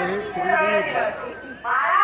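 A performer's voice carried over a public-address loudspeaker, in drawn-out phrases whose pitch wavers up and down. It drops off briefly, then a louder phrase starts near the end.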